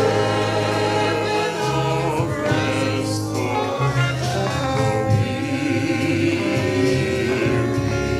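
A group of singers performing a gospel song with live instrumental accompaniment and a steady bass line under the voices.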